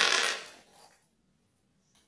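A short clatter of small hard makeup items and the hand mirror being picked up and handled, loud at the start and dying away within about half a second.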